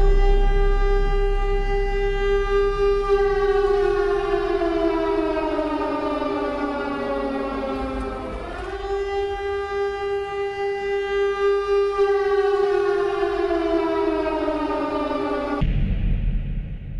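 Air-raid siren wailing in two long cycles: each time it rises quickly, holds its pitch for a few seconds, then slowly falls. The second cycle starts about halfway through, and the sound cuts off sharply just before the end.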